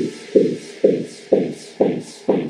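Electronic dance music build-up: a single pulsing synth hit repeats on every beat, about two a second, each one fading fast. The hits climb steadily in pitch, with the bass and the rest of the track stripped away.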